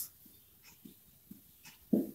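Faint, short scratches of a marker writing on a whiteboard, with soft breathing between them.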